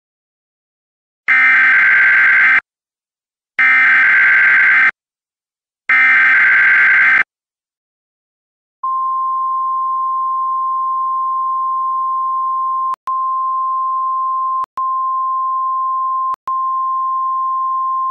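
Emergency Alert System broadcast: three bursts of SAME digital header data, a harsh warbling screech each about a second long, followed about nine seconds in by the single steady alert tone of the National Weather Service, at about 1050 Hz. The tone is interrupted three times by brief clicks.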